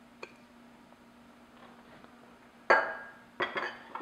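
A glass mixing bowl set down on a granite countertop: one sharp clink with a brief ring near the end, then a few lighter knocks.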